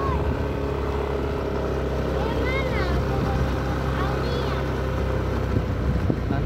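Motorcycle engine running steadily at an even speed.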